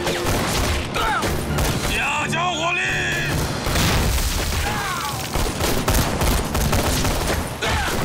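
Battle-scene gunfire: a dense volley of rifle and pistol shots with explosions, and men shouting and yelling over it, the loudest shouts about two to three seconds in.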